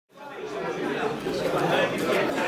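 Many people talking at once in a crowded room, a dense babble of overlapping voices that fades in from silence just after the start.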